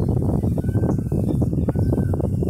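Footsteps on the deck panels of a steel suspension footbridge, with the deck knocking and rattling under the walkers' weight in a dense, irregular clatter, and a few short high squeaks.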